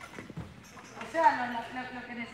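A few light knocks in the first half second, then a person's voice talking briefly in the second half.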